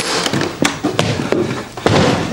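A door being unlocked and opened: a string of about six short knocks and clicks.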